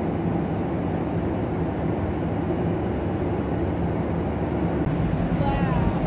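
Airliner cabin noise in cruise: the steady, low rush of the turbofan engines and airflow over the fuselage, with a steady low hum under it.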